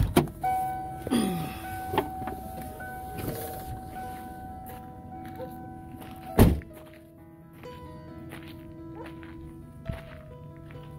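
Background music throughout, with a few knocks and thuds as someone climbs down out of a Ford E-350 motorhome cab; the loudest, a single heavy thud about six and a half seconds in, is the cab door being shut.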